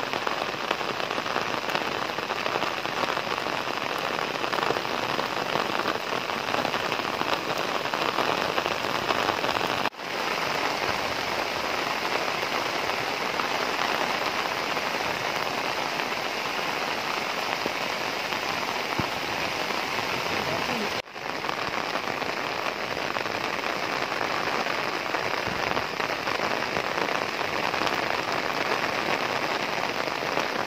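Heavy monsoon rain falling steadily, a continuous even hiss, broken twice by short gaps about ten and twenty-one seconds in.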